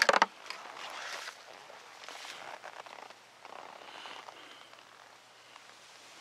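Handling noise: a sharp knock right at the start, then faint, scattered rustling and light knocks.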